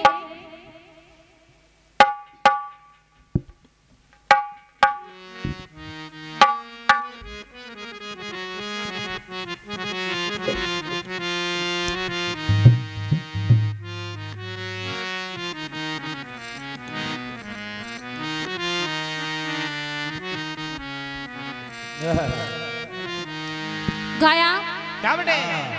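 Harmonium playing a steady introductory melody in Indian folk style, preceded by a few short separate notes after a brief silence. A low drum thud sounds in the middle, and a singing voice comes in near the end.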